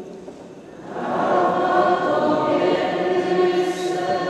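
A congregation singing the sung response to the Gospel acclamation together, many voices at once. The singing comes in loudly about a second in, after a brief softer lull.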